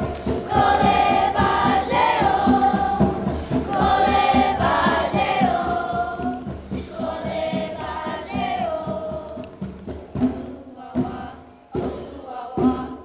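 Children's choir singing together in long held notes that bend and slide, over a steady low beat. The singing fades away near the end, leaving a few sharp thuds.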